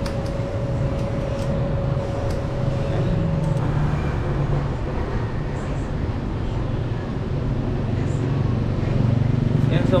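Steady low background rumble with a faint steady whine that stops about three and a half seconds in. A few faint light metallic clicks come from an Allen wrench working the mounting bolts of a bicycle's mechanical disc brake caliper.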